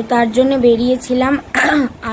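A young woman talking, her voice pitched fairly high, with a short rough, breathy sound near the end.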